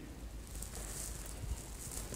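Faint room noise with light scuffing of shoes on a parquet floor as a dancer steps, and one soft tap about one and a half seconds in.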